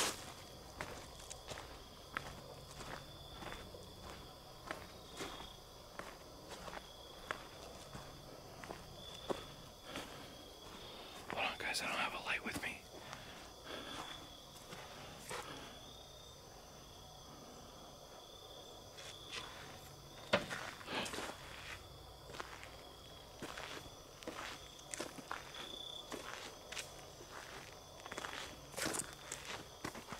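Footsteps on a forest floor at a slow, regular pace, with a break of a few seconds past the middle. A louder rustle comes about twelve seconds in, and a sharp snap about twenty seconds in.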